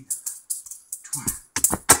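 Juggling balls being thrown and caught in a five-ball pattern, a short click or rattle at each catch, about four a second, with a few louder clacks near the end as the pattern is caught up.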